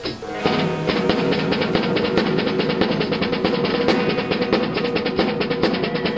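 Acoustic drum kit played along to a recorded song. Drums and band come in together about half a second in, then keep up a fast, even run of strokes over the music.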